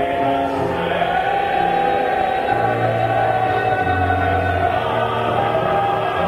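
Gospel music: voices singing long held chords, with the bass note changing twice partway through.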